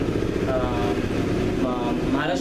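A man talking, with a steady low engine rumble beneath his voice.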